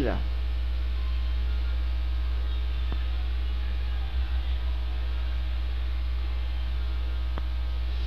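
Steady low electrical mains hum in the recording, unchanging throughout, with a faint tick about three seconds in and another near the end.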